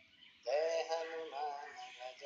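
Devotional bhajan singing to Hanuman. After a short pause, a singer comes in about half a second in with a sung vowel that slides up and then holds, followed by a brief second phrase.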